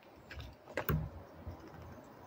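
Grey squirrel eating a peanut close to the microphone: a few sharp, keyboard-like clicks of the shell being cracked and handled, with a louder click and soft knock about a second in.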